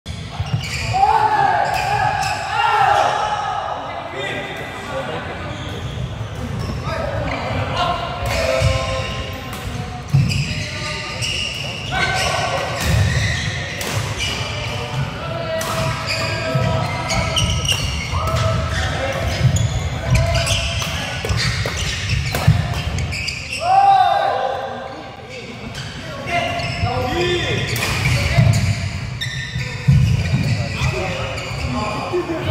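Badminton rally on an indoor wooden court: sharp cracks of rackets hitting the shuttlecock again and again, with court shoes squeaking on the floor, loudest about a second in and again near 24 s.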